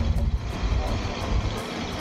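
Wind buffeting the camera's microphone outdoors, an uneven low rumble that rises and falls in gusts.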